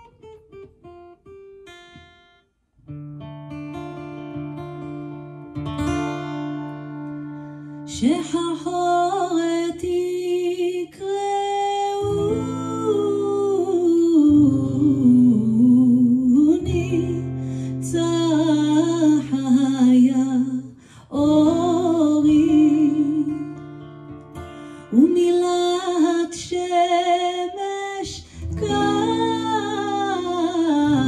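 Fingerpicked acoustic guitar opening a song softly, fuller after a few seconds; a woman's solo voice comes in about eight seconds in, singing a slow Ladino folk melody over the guitar.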